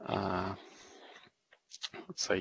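A man's held hesitation sound, a drawn-out vowel in mid-sentence, fading after about half a second into a brief pause with faint mouth noises.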